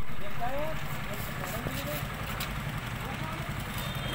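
A vehicle engine idling steadily, with faint voices in the background.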